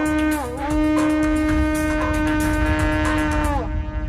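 Background music: a wind instrument holds one long note, dips briefly in pitch about half a second in, then slides down and fades out near the end, over a low hum.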